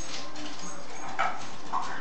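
Small dog's claws clicking on a hardwood floor as a Yorkshire terrier trots to a muffin tin of toy balls, with two short high-pitched sounds about a second in and near the end.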